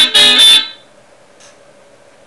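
Electric guitar playing two last loud funk chord stabs in D, which ring briefly and stop within the first second. After that only a faint steady hum and a small click remain.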